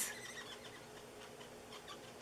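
Faint, irregular light taps of a felt-tipped alcohol marker (Stampin' Blends) being pounced on a plastic window sheet to colour in a stamped image.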